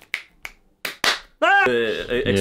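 Finger snaps from both hands: a few short, sharp clicks in the first second, then a voice comes in with a sliding pitch near the end.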